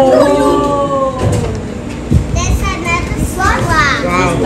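Excited voices of children and adults: a drawn-out "wow" trailing off in the first second, quieter crowd chatter, then more excited exclamations near the end.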